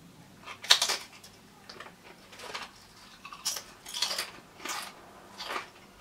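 A thick-cut potato crisp, about two to three millimetres thick, being bitten and chewed. The loudest crunch is the bite about a second in, followed by about six more crunches spaced under a second apart as it is chewed.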